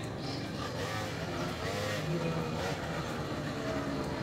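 Small motor scooter running as it rides slowly up close, with faint voices in the background.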